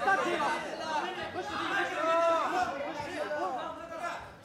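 Several men's voices calling out and talking over one another: spectators and cornermen around a fight cage.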